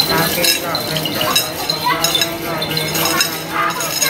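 Small metal jingle bells clinking in a steady rhythm, about two or three shakes a second, under a chanting voice.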